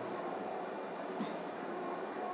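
Garlic cloves and small shallots frying in hot oil in a nonstick pan, a soft, steady sizzle.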